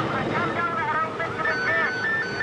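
Indistinct voices over a steady machinery-like rumble. About one and a half seconds in, a synthesizer tune of two high notes alternating in an even rhythm begins.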